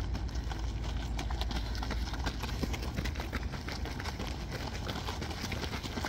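Running footsteps of a pack of cross-country runners crunching on a gravel road, many quick overlapping footfalls that grow denser as the runners near. A low rumble sits underneath, strongest in the first two seconds.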